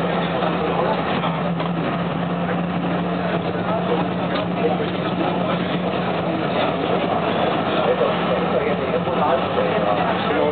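Rheinbahn tram TW 2664 running along the street, heard from inside the car: a steady low hum with rolling noise, the hum weakening about seven seconds in, under indistinct voices of people talking.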